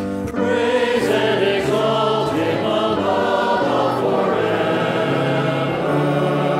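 Choir singing a slow liturgical acclamation, held notes moving from one to the next.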